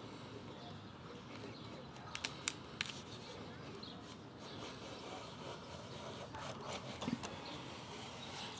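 A putty knife blade scraping faintly along a wooden door jamb, lifting off primer. A few light clicks come about two seconds in and again near the end.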